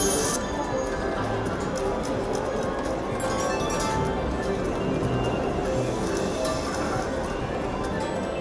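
Siberian Storm video slot machine playing its electronic spin-and-win jingle: a run of short chiming tones and clicks as the reels spin, stop and pay out small wins, over casino room noise.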